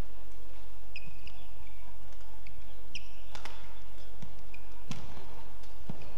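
Badminton rally: sharp racket strikes on the shuttlecock, the two clearest about a second and a half apart in the second half, with short high squeaks of players' shoes on the court floor between them.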